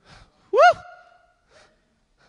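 A man's short exclamation of 'woo!' into a handheld microphone, rising then falling in pitch, with a brief ring hanging after it.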